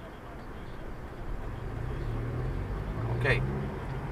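Car engine heard from inside the cabin as the car moves off from a standstill, its sound growing louder from about a second in as it pulls away.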